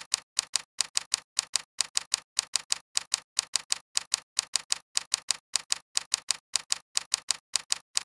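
Typing sound effect: a steady run of crisp keystroke clicks, about five a second, keeping pace with text appearing one character at a time.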